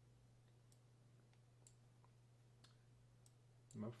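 A few faint, scattered computer mouse clicks over a low, steady electrical hum, as finger bones are selected and rotated in motion-capture software.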